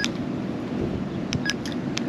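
Keypad presses on a TIDRADIO TD-H8 handheld ham radio: a few short clicks and a short beep about a second and a half in, as the menu setting is scrolled, over steady background noise.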